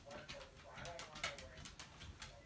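Faint clicks and knocks of a camcorder being handled on its tripod, a quick irregular run of them, with a few brief, faint, low pitched sounds between.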